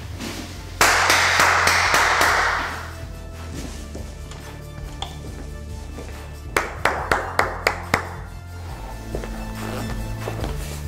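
Background music with a steady low bed. About a second in, a loud rush of noise lasts roughly two seconds. Later, a quick run of about seven sharp taps or knocks comes a few tenths of a second apart.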